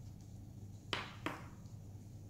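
Two sharp taps about a third of a second apart, over a low steady hum.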